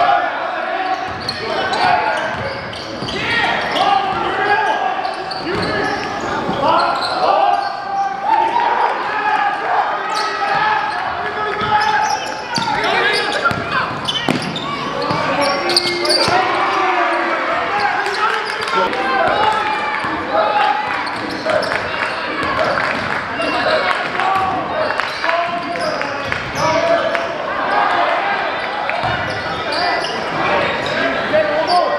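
Live gym sound of a basketball game: a basketball bouncing on the hardwood court under a steady babble of crowd voices and shouts.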